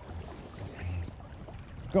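Wind rumbling on the microphone over the steady rush of a shallow, fast-flowing river.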